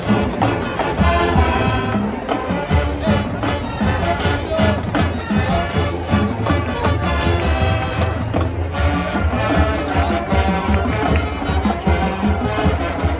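High school marching band playing a pop-rock arrangement: massed brass over a steady drum beat.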